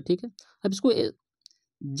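Speech: a man's voice in two short bursts, then a pause broken by a faint click.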